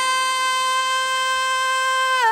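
A woman singing one long high note, held at a steady pitch.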